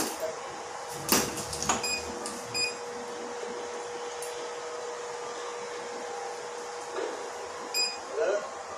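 Dental curing light: a short electronic beep as it switches on, a steady hum while it runs for about five seconds, and another beep near the end as its timed cycle finishes, bonding an orthodontic bracket. A clatter of metal dental instruments comes about a second in and is the loudest sound.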